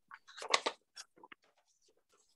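Scattered short clicks and rustling noises coming through a video call, the sound cutting out to dead silence between them, loudest about half a second in.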